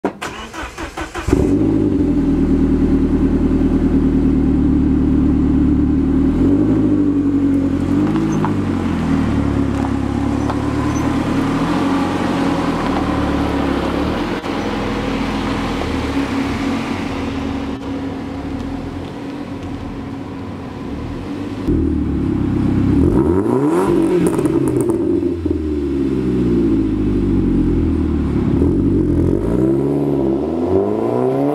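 Saab 9-3 Viggen's turbocharged 2.3-litre four-cylinder running through a Saab-Sport stainless exhaust with a 3-inch downpipe. It comes in abruptly about a second in and runs steadily with some slow rises and falls in pitch. From about two-thirds of the way through, it revs harder, its pitch sweeping up and down repeatedly.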